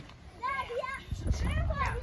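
Children's high-pitched voices calling out wordlessly while playing, in two short bursts, about half a second in and again near the end.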